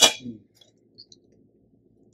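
Wire-mesh frying skimmer knocking against a stainless steel bowl as freshly fried karapusa is tipped off it: one sharp metal clang with a brief ring right at the start, then a couple of faint ticks about a second in.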